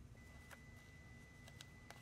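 Near silence: room tone with a faint steady high whine and a few faint clicks from paper and ribbon being handled.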